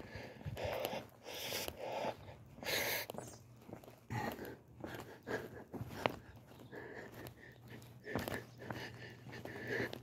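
Breathing close to the microphone while walking, in irregular breaths, with scattered soft clicks and rustles.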